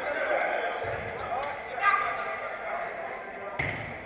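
Players' voices calling out across an indoor football hall, with reverberation, and a loud shout about two seconds in. A short thud, like a ball being kicked, comes near the end.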